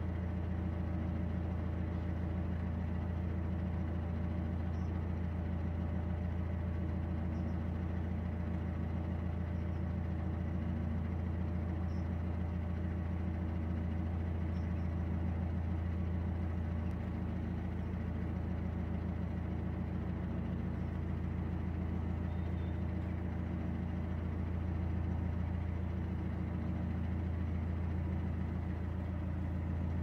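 Narrowboat's inboard engine running steadily while under way, a constant low drone with a fine, even throb.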